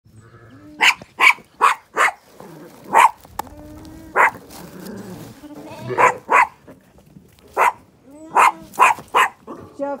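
A small sheepdog barking sharply about a dozen times in short irregular bursts as it herds Zwartbles ewes and lambs, with the sheep bleating in between.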